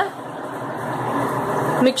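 Hot oil with mustard seeds, curry leaves and asafoetida sizzling steadily in a stainless-steel pot.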